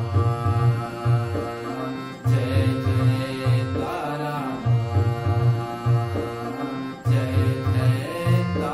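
A man singing a Hindi devotional song (bhakti geet) to his own harmonium, whose reeds hold steady chords under the voice, over a steady low drum beat.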